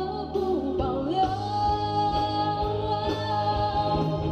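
A woman singing a Mandopop ballad into a microphone, backed by a live band. About a second in she holds one long note until just before the end.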